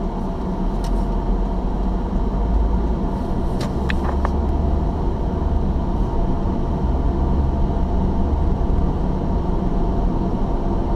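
Car driving along a paved road, heard from inside the cabin: a steady low engine and road rumble, with a few faint clicks about four seconds in.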